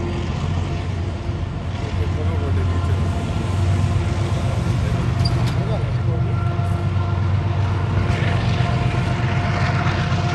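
Toyota Land Cruiser safari vehicle's engine running, heard from inside the cabin as a steady low drone, with faint voices underneath.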